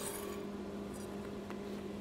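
Steady low electrical hum from a switched-on Lincoln AC stick-welding power source idling with no arc struck, with a faint click about one and a half seconds in.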